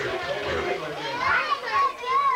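Overlapping chatter of children and adults in a crowded room, with high-pitched children's voices rising above the hubbub near the end.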